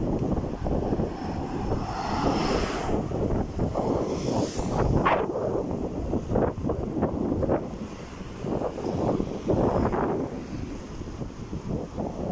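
Wind buffeting the microphone on a moving bicycle: an uneven rumble that swells and dips in gusts.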